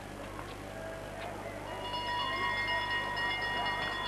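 Last-lap bell ringing steadily for about two seconds from about halfway in, signalling the skaters' final lap, over faint crowd noise.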